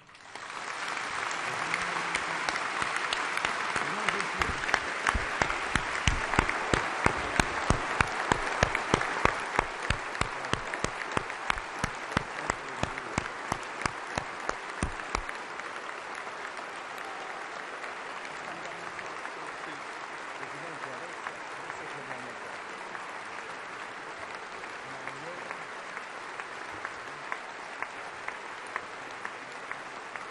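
Applause from a large parliamentary assembly in a big hall. From about four seconds in, the clapping falls into a rhythmic unison beat of about two claps a second over the general applause. The beat stops abruptly about fifteen seconds in, and steadier, quieter applause carries on.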